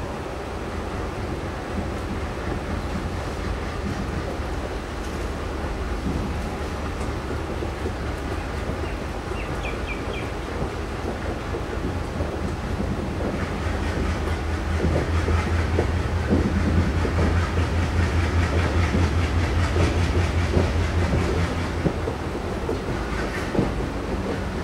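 Passenger coach running along the track behind an ALCO WDG3A diesel locomotive: wheels clattering over rail joints over a steady low rumble. About halfway through, the low throb of the locomotive's engine grows louder.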